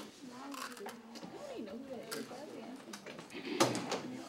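Classroom chatter: several students talking quietly at once, with a few light clicks and one louder clatter near the end.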